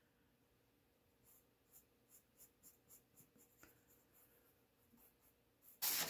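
Pencil tip scratching on drawing paper in faint short strokes, about three or four a second, sketching lines. A brief louder rustle comes just before the end.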